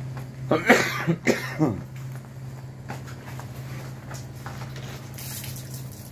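A man coughing, a short run of coughs in the first two seconds, over a steady low hum.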